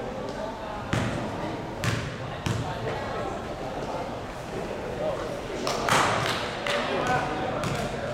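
A basketball bouncing on a sports hall floor, with a few separate bounces in the first three seconds. About six seconds in comes the loudest moment, a cluster of impacts, and then more bounces. Voices carry in the echoing hall throughout.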